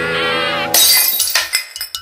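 Song backing music with a wavering high line, broken off about three-quarters of a second in by a sudden crash of shattering glass, a sound effect whose tinkling dies away over the next second.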